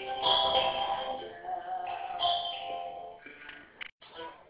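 Music of a young woman's singing voice played back sped up, so it sounds high-pitched and artificial. It trails off near the end and breaks off abruptly just before the end.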